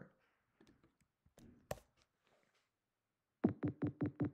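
Computer-generated 200 Hz sine wave played over and over in very short bursts, a low hum chopped into a fast string of beeps, about six a second, that starts near the end. Before it, only a few faint clicks.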